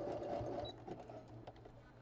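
Electric sewing machine running a zigzag stitch through layered quilting scraps, stopping about two-thirds of a second in with a short high beep. After that only a low steady hum and a few faint clicks remain as the fabric is shifted under the needle.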